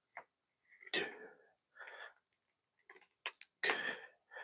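Handling sounds of a USB charging cable being plugged into a rugged power bank and a tablet: a handful of separate clicks and knocks, the loudest about a second in and just before the end.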